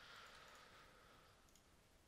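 Near silence: faint room hiss fading away, with a couple of faint computer mouse clicks about a second and a half in.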